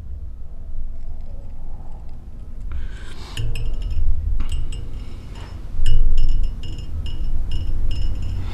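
Light metallic clinks, each with a short high ring, and low handling bumps as thread is wrapped tight on a fly held in a fly-tying vise. The clinks come several times, mostly in the second half.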